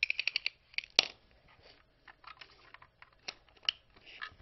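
A retractable Ethernet cable being pulled out and handled: a quick run of about six clicks from its reel at the start, a sharper click about a second in, then scattered light plastic taps with two clear clicks near the end.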